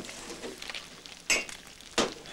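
Quiet hiss of breakfast being served, with a single brief clink of tableware about two-thirds of the way through.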